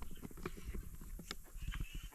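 Faint footsteps on wooden boardwalk planks: a run of irregular soft knocks and thuds as people walk.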